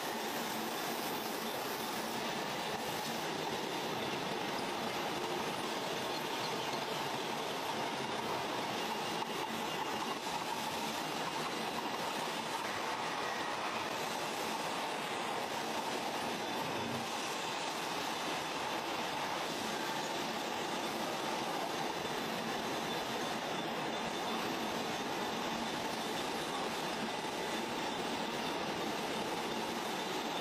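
Steady running noise of food-processing machinery on a surimi crab-stick production line: an even, unbroken hiss-like drone with a faint steady hum in it.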